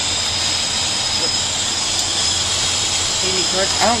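Steady rushing roar of a jet airliner in flight, heard from inside the lavatory, with a thin, steady high whine over it.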